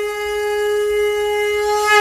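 One long, steady horn-like blown note with many overtones, swelling slightly near the end.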